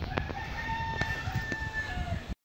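A rooster crowing: one long call, held level and dropping in pitch at the end, with a few light clicks over it.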